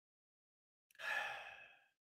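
A man's single breathy sigh-like exhale, about a second in, fading out within a second, as he breathes out after a sip of whisky.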